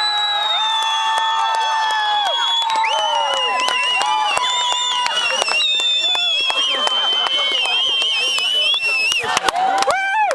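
Group of teenage girls screaming in celebration after winning the match: several high-pitched shrieks overlap and are held for seconds at a time. A few sharp clicks come near the end.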